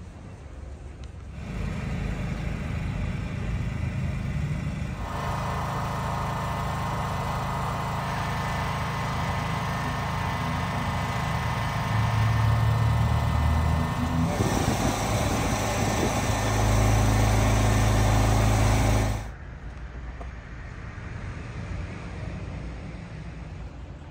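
An engine-driven machine in a service van running steadily with a low hum. It gets louder in steps and cuts off suddenly a few seconds before the end.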